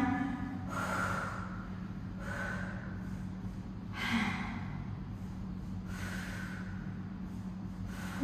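A woman breathing hard from exertion during glute bridge reps: four breaths about two seconds apart, the loudest about four seconds in, over a steady low hum.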